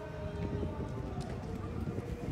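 Footsteps on stone paving as someone walks, over a low rumble, with indistinct voices in the background.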